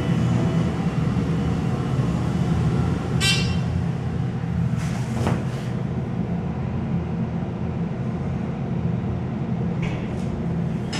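Hydraulic elevator car in travel, with a steady low hum. A short ringing sound comes about three seconds in and a click at about five seconds.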